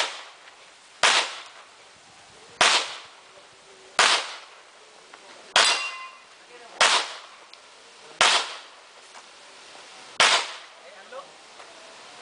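Handgun shots fired one at a time, eight in all, about one every second to second and a half, with a longer pause before the last. Each shot has a short echo, and one shot about halfway through is followed by a brief ringing tone.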